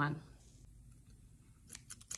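Pair of scissors snipping: a few short sharp clicks of the blades opening and closing near the end.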